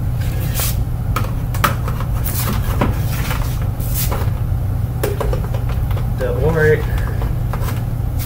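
Clicks and knocks of the 2004 Dirt Devil Vision Wide Glide upright's attachments being handled, a few sharp ones in the first half, over a steady low hum. A short murmur of voice a little after six seconds.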